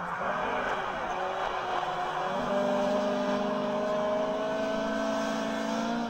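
Rally car engine running hard on a snowy stage, its note climbing steadily as it accelerates, over a rush of tyre and road noise.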